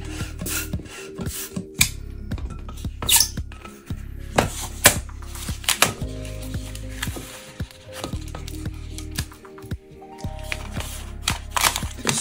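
Background music with steady chords, over short squeaks and clicks of a latex modelling balloon being handled, knotted and twisted.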